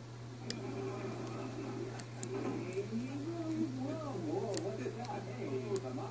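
Quiet speech in the background over a steady low hum, with four sharp clicks spread through it, typical of a plastic Rainbow Loom and its hook being worked.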